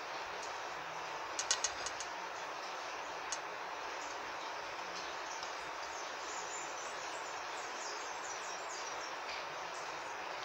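Steady background hiss with a few light clicks from handling a ribbon against a glass vase, a cluster about one and a half seconds in and one more near three seconds. Faint high bird chirps come through in the second half.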